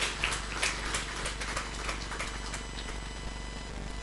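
Audience applauding, the scattered claps thinning out and dying away about two and a half seconds in, leaving a steady background hum.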